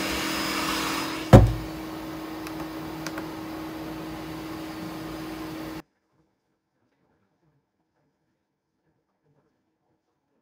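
Enclosed Bambu Lab 3D printer running, a steady fan hum with a low steady tone. One sharp thump comes about a second in, followed by a couple of faint clicks. The sound then cuts off abruptly just over halfway through, leaving silence.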